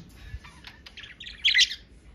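Budgerigars chattering: scattered short chirps and warbles, with a louder burst of chirps about one and a half seconds in.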